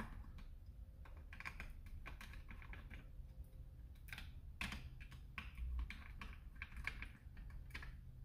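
Quiet, irregular clicks and taps of hard plastic parts being handled as the red front piece of a Dart Zone MK4 foam blaster is worked loose and lifted off; the clicks are a little louder about halfway through.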